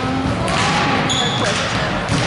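Volleyballs being struck and bouncing on a gymnasium floor during spiking warm-up, a few sharp smacks over a steady bed of players' voices in the hall.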